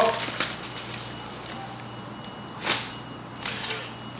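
A paper mailing envelope being torn open and handled by hand: scattered rustling, with a louder tearing rip about two and a half seconds in and a shorter one near the end, over a steady low hum.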